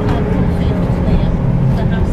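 Steady low rumble of a moving bus's engine and tyres, heard from inside the cabin, with passengers' voices faint in the background.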